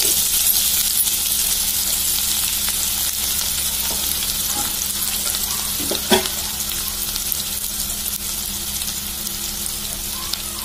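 Chopped onions and seeds sizzling in hot oil in a frying pan, a steady crackling hiss. One short knock stands out about six seconds in.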